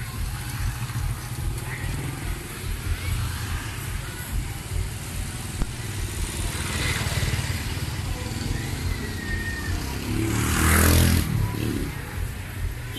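Street traffic noise dominated by motorbike engines, with a steady low rumble; a motorbike passes close by, loudest about ten seconds in.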